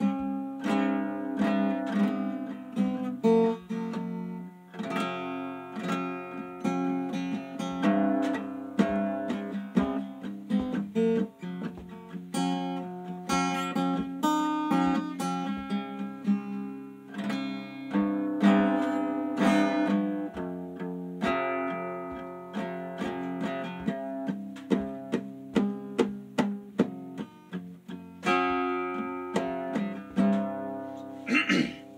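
Acoustic guitar strummed steadily through a chord progression, instrumental with no singing.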